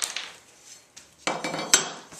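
A metal speed square set down on a plywood bench top: a sharp clack at the start, then a louder rattling clatter about a second and a quarter in that ends in a last sharp hit.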